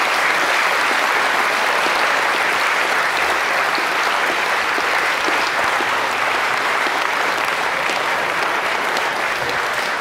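A large audience applauding, a steady, sustained round of clapping that eases slightly toward the end.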